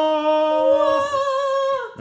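A person's voice singing one long, held 'ahh' note, a mock heavenly-choir sound as the box lid is lifted; the note shifts about halfway through and falls away just before the end.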